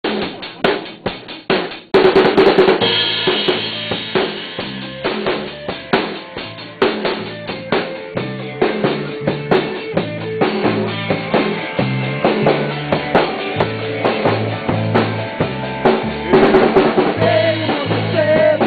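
Band rehearsal: a drum kit plays a few separate hits, then about two seconds in the whole band comes in with drums and guitar, playing steadily on.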